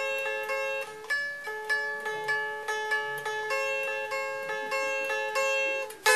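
Les Paul-style electric guitar played with a pick as single notes: a short repeating melodic figure high on the neck, about three notes a second, each note ringing on into the next.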